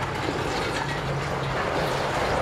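Demolition of a concrete building by heavy machinery: a steady engine drone under continuous crunching and rattling of breaking concrete and falling debris.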